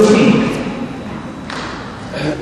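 A tennis ball bouncing on the indoor court: two dull thumps about a second apart over the murmur of the hall.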